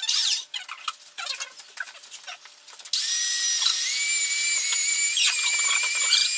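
Electric hand mixer beating margarine in a bowl: scattered clicks and knocks, then about halfway through the motor starts and rises quickly to a steady high whine.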